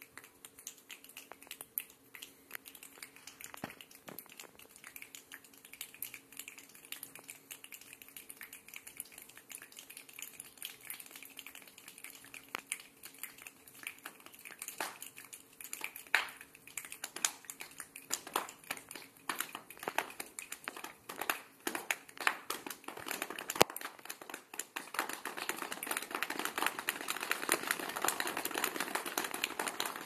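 Scattered sharp clicks and light taps over a faint steady hum, with no playing. In the last few seconds, a wash of applause swells up.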